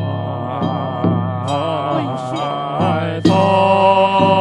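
A large congregation chanting a slow Pure Land Buddhist liturgical verse in unison, the melody drawn out and wavering. Sharp strikes of ritual percussion sound at uneven intervals, about a second in and again near the end.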